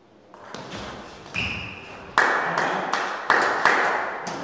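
Table tennis ball being hit and bouncing. There are a few light ticks in the first second, then from about halfway a quicker run of sharper, ringing clicks, about three a second.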